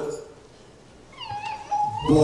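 A man's loud voice through the microphone trails off, then about a second in a faint, high-pitched, wavering cry lasts under a second.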